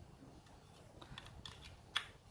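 A few light plastic clicks as a two-pin plug is handled, then one sharp click near the end as it is pushed into a plastic power strip.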